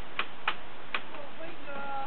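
Light clicking from dogs moving about on a wooden deck: four sharp ticks within two seconds, over a steady hiss. A faint drawn-out tone comes in near the end.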